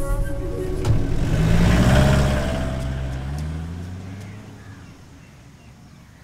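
A motor vehicle's engine pulling away: it swells to its loudest about two seconds in, its pitch rising and then sinking, and fades into the distance over the next few seconds.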